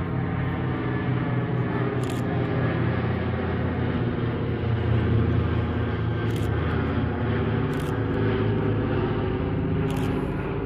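Radial piston engines of a four-engine WWII bomber droning in flight overhead. The steady, even hum swells to its loudest about halfway through.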